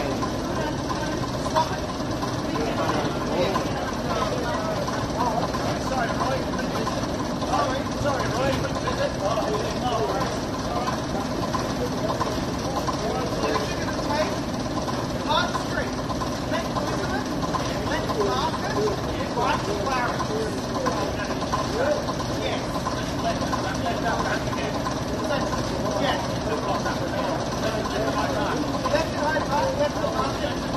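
Leyland OPD2/1 double-decker bus's six-cylinder diesel engine idling steadily, with the indistinct chatter of people standing nearby over it.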